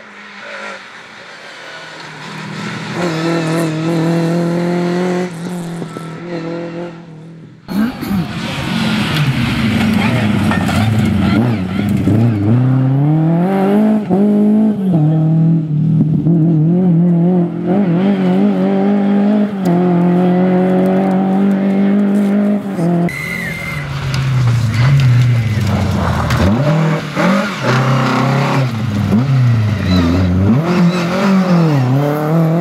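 Lada VFTS rally car's four-cylinder engine revving hard under acceleration, its pitch climbing and dropping sharply at each gear change, in several passes cut together; it gets much louder about eight seconds in.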